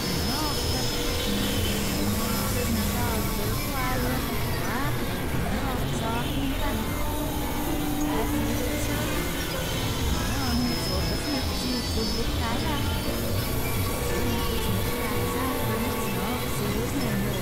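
Experimental synthesizer noise music: a dense, steady mix of low rumbling drones and hiss, with held tones and short wavering, gliding pitches running through it.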